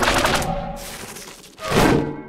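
A rapid run of cartoon click sound effects over light background music, thinning out after about half a second, then a loud thud near the end.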